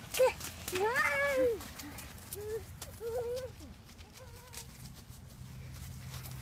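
A young child's high voice making wordless playful cries, a string of short rising-and-falling calls that grow fainter toward the end.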